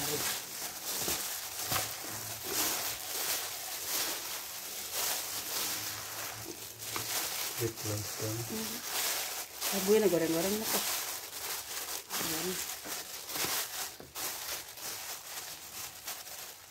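A plastic bag worn over the hand crinkling and rustling in quick, irregular crackles as it squeezes and mixes grated cassava and coconut in a plastic bowl. Brief voices come in a few times in the background.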